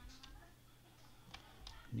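A few faint, sharp clicks from computer input while code is scrolled, over a low steady hum.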